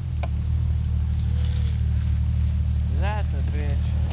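Jeep Cherokee XJ engine pulling under load as the truck climbs a dirt hill, a steady low rumble. A person's voice calls out briefly near the end.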